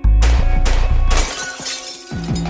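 A pane of glass shattering, heard as a sudden crash at the start and a second burst of breaking glass about a second in, over background music. It stands for the glass door that was broken by a slingshot pellet.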